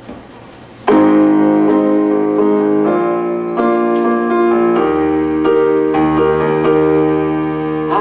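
Roland electronic keyboard set to a piano sound, playing the chord intro to a song: sustained chords start suddenly about a second in, and low bass notes join about halfway through.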